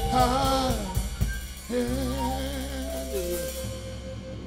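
Live blues band playing: a lead line with bent, wavering notes over sustained bass and drums, with several sharp drum or cymbal strikes in the first second or so. The sound dies away toward the end.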